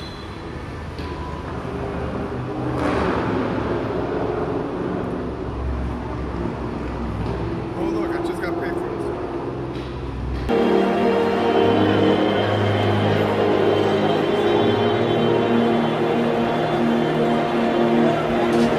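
Street ambience: a low rumble of traffic noise with faint voices. About ten seconds in it cuts abruptly to music playing over the chatter of a crowd.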